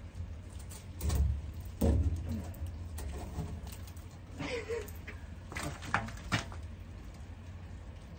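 Handling noise as a painted wooden board is propped against an iron railing, with a couple of sharp knocks about six seconds in. Low rumble on the microphone and a few short non-word vocal sounds from the man working.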